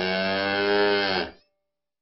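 A cow mooing: one long call that sags in pitch at its end and cuts off after about a second and a half.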